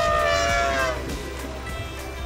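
Asian elephant trumpeting: one long, horn-like call that falls slightly in pitch and fades out about a second in, over background music.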